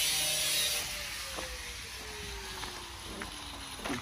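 An engine running in the background, its pitch falling slowly and steadily, with a few faint clicks.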